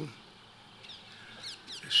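A pause in a man's speech, holding a few faint, short, high chirps from small birds; his voice comes back at the very end.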